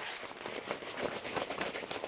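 A cloth diver-down flag rustling and flapping as it is shaken out and handled, with dense small crackling ticks throughout.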